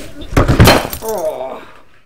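A glass bottle smashing, a loud sudden crash about half a second in, followed by a man's short wavering groan that fades away.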